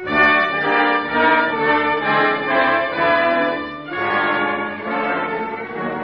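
Orchestral music bridge with brass to the fore, coming in suddenly and loud and easing somewhat about four seconds in: a dramatic scene-change cue in an old-time radio drama.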